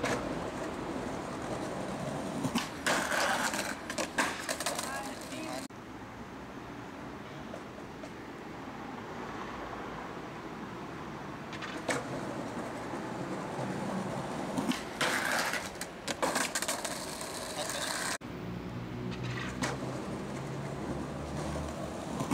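Skateboard wheels rolling on stone paving, with clusters of sharp board clacks and knocks from tricks and landings several times. The sound breaks off abruptly twice where takes are cut together.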